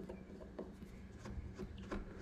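Faint small ticks and rubbing of a stainless steel sculpting tool smoothing epoxy clay, over a low steady hum.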